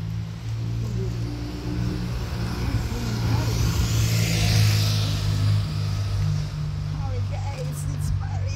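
Street traffic: a car passes, its noise swelling and fading about four to five seconds in, over a steady low engine hum.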